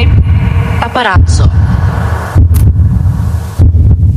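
Loud electronic title-sequence music for a TV show: a deep, throbbing bass pulse with sweeping swooshes and bright zapping effects, including a quick swooping glide about a second in.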